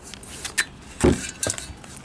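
Handling noise from a steel helmet being moved on a table: a few light metallic clicks, a heavier thump about a second in, then more clicks.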